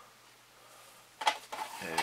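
Quiet room tone, broken by one short click a little over a second in, then a man's voice starting near the end.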